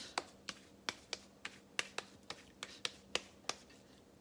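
Oiled hands patting a ball of mashed potato flat into a small patty: a steady run of short, moist slaps, about three a second.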